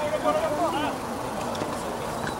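Several voices calling and shouting, rising and falling in the first second, over a steady background hiss.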